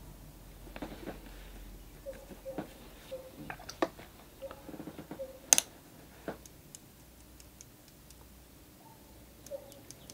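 Scattered soft taps and clicks of a watercolour brush dabbing on paper and working in a metal paint tin, with the sharpest click about halfway through and only faint ticks after.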